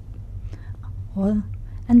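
Speech only: a short murmured voice sound a little past the first second, then the start of a spoken word near the end. A low steady hum runs underneath.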